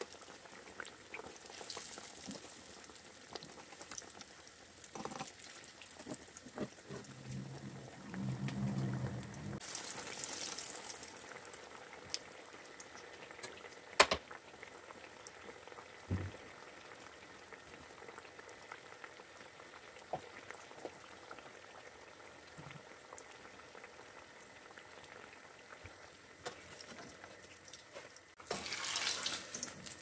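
Potato patties (maakouda) deep-frying in oil in a pan, a steady bubbling crackle. It swells into louder sizzling twice, around a third of the way in and again near the end. A single sharp click about halfway through is the loudest sound.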